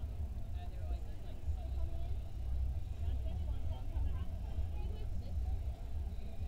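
Harbour background: a steady low rumble under faint, distant voices of people talking.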